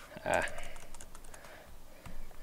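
Computer keyboard typing: a quick run of light key clicks, mostly in the first half.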